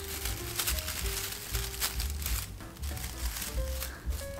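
Papery crackling and rustling of fully dried hydrangea heads and grapevine twigs as hydrangea stems are pushed into a grapevine wreath. Soft background music plays underneath.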